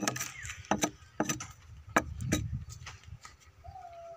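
Hatchet chopping into a large split hardwood log: a run of sharp, irregular chopping knocks, roughly two a second. A rooster starts crowing faintly in the background near the end.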